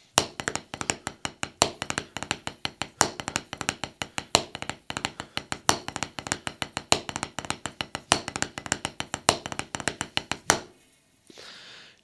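Wooden drumsticks playing the drag paradiddle #2 rudiment on a rubber practice pad set on a snare drum: a steady stream of fast taps with a louder accented stroke about every second and a quarter. The playing stops near the end.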